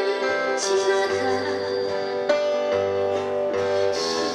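Acoustic guitars playing an instrumental passage of a slow Korean ballad, strummed and plucked chords over a low sustained bass note that comes in about a second in.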